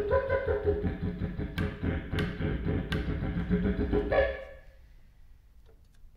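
Didgeridoo played in a fast pulsing rhythm over its low drone, with three sharp clicks in the middle. It stops about four seconds in.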